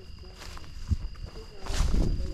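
Insects trilling steadily at two high pitches, with wind rumbling on the microphone and a gust near the end.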